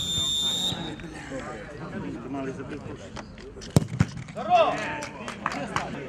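A referee's whistle blows once, briefly, signalling a penalty kick. About three seconds later comes the sharp thud of the ball being kicked, followed by shouts from players and onlookers, with voices talking in the background throughout.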